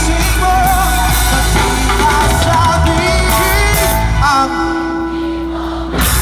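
Live band music through a PA: a singer with vibrato over electric guitars, keyboard and drums. About four and a half seconds in, the band's low end drops out, leaving a thinner held note, and the full band comes back in at the end.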